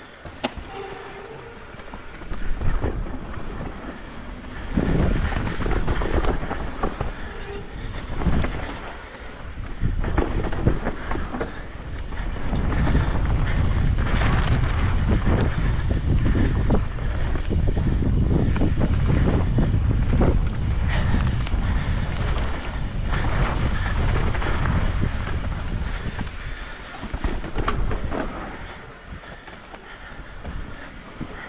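Mountain bike riding fast down a dirt singletrack: tyre noise and frequent knocks and rattles over bumps, under wind rushing across the microphone. The wind rumble is heaviest through the middle and later part, as speed builds, and eases near the end.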